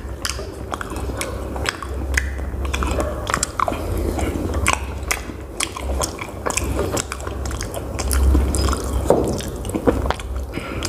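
A person chewing food close to the microphone: a steady run of wet smacking and crunching mouth clicks, over a low rumble that swells and fades.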